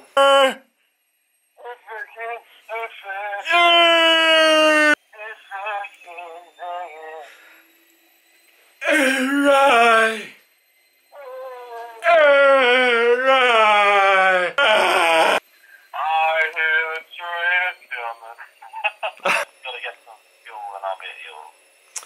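A man's voice singing and vocalising loudly. Three long held notes bend in pitch, the longest a little past halfway, with short choppy voice phrases in between.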